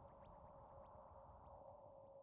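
Faint electronic drone, the dying tail of a synth music cue: one low steady tone held under a thin haze, with a few faint high falling blips.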